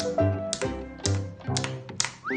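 Background music with a steady beat, over sharp taps of a caique knocking a stick held in its foot against a tabletop.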